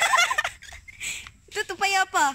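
Young women's high, wavering voices laughing and clowning, in a burst at the start and another near the end.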